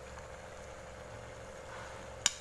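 A pan of egg gravy at a rolling boil on the stove, under a steady low hum.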